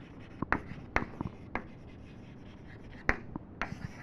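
Chalk writing on a blackboard: a series of sharp chalk taps and short strokes as a heading is written, the loudest tap about three seconds in.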